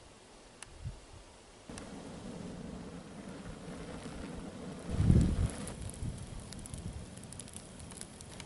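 Open fire burning with a steady rush of flame and scattered crackles, starting about two seconds in, with a louder low rush of flame about five seconds in.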